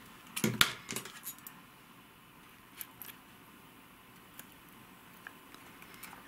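A few sharp clicks of a small metal tool being handled at an orchid's leaf base, bunched in the first second, then only scattered faint ticks over quiet room tone.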